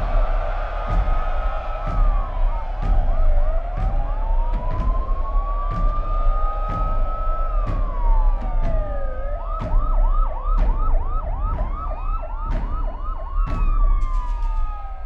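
Several emergency-vehicle sirens sound at once and overlap: slow wails rise and fall, and fast yelping warbles come in bursts. They sound over the noise of a crowd rioting, with scattered sharp bangs.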